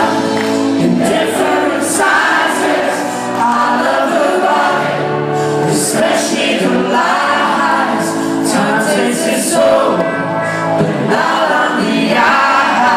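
Live pop band playing a song, with sung vocals over electric guitars, keyboards and drums. It is heard from within the audience.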